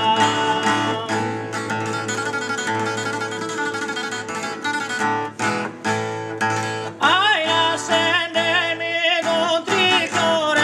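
Unamplified acoustic guitar playing a Sardinian canto a chitarra accompaniment in D (a "secondo" song), strummed chords on their own through the middle. About seven seconds in, a man's voice enters with a high line that bends and ornaments heavily from note to note.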